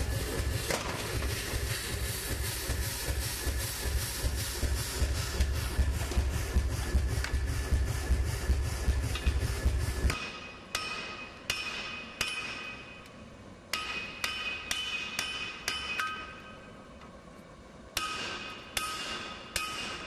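Hot steel being forged with hammer blows. For the first half there are rapid, even blows, about three a second, over a constant low rumble. After an abrupt change, slower single blows on an anvil follow, each leaving a ringing tone.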